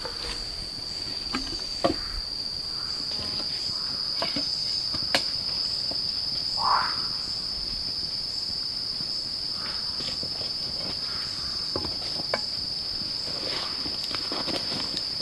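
Steady, high-pitched drone of forest insects, with a few sharp wooden knocks and clicks from sticks being handled.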